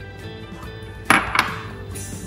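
Two sharp clinks about a second in, a third of a second apart: a glass bowl knocking against a stand mixer's stainless steel bowl as caster sugar is tipped in, over background music.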